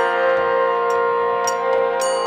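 Kirtan music: a harmonium holds a steady chord with a bamboo flute, while ringing metal cymbal strikes land right at the start and about a second and a half in, over soft low drum beats.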